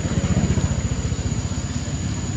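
A small engine running steadily, heard as a low, evenly pulsing rumble that swells slightly in the first second.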